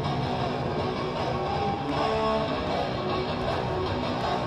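Heavy metal band playing live on stage: amplified electric guitar over a full band, dense and steady, with a few held guitar notes about two seconds in.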